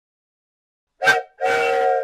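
Wooden train whistle blown twice: a short toot, then a longer steady blast.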